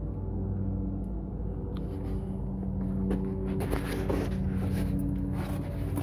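A steady low machine hum made of several held tones, with light handling knocks and rustles in the middle.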